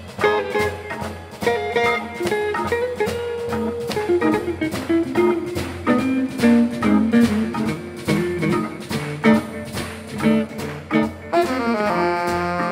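Live soul-jazz band playing the opening groove of a blues: organ, electric guitar and drums with a steady swinging beat. Near the end the alto saxophone comes in with the melody.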